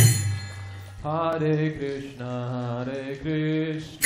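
A kirtan chant sung by a solo male voice, unaccompanied in phrases, after a loud clash of hand cymbals at the start that rings away over the first second.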